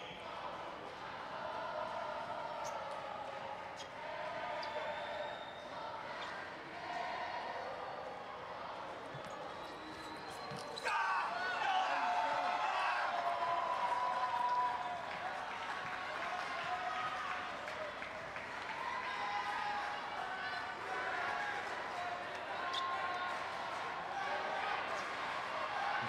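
Table tennis ball bouncing on a bat and table and being struck in a rally, over crowd voices in a large arena. The crowd grows louder about eleven seconds in and stays up.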